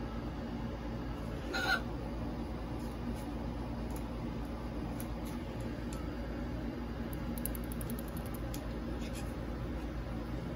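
A single short squawk from a hybrid macaw about two seconds in, over a steady low background hum. A quick run of faint ticks follows later.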